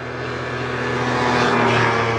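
A motor vehicle going by on the road, its engine and tyre noise swelling to a peak near the end and then easing.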